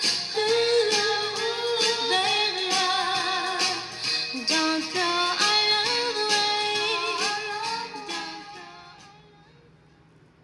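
1960s Motown pop song with a female lead vocal over a steady beat, fading out about eight to nine seconds in.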